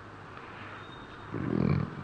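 A pause in a man's speech, with faint room tone, broken about a second and a half in by a brief low vocal sound from the speaker.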